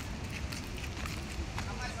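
Loud outdoor noise with people's voices, much louder than the talk around it; it cuts in suddenly just before and cuts off suddenly just after, and a voice says "Go" near the end.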